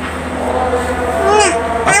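Children's voices: a short, high-pitched vocal sound about one and a half seconds in, over a steady low hum.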